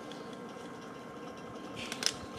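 Faint handling noise of fingers working small plastic action-figure parts, fitting a handle into a fold-out rack, over a thin steady high hum.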